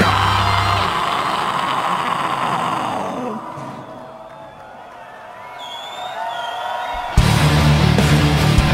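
A live heavy metal band's distorted guitars and bass cut out about a second in, leaving a festival crowd cheering and yelling, which fades to a lull. Near the end the band crashes back in with loud, heavy low guitar and bass.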